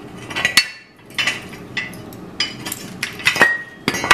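Metal ingot moulds and freshly cast metal ingots being handled and knocked out onto a concrete floor: a string of about eight sharp metallic knocks and clinks, several ringing briefly.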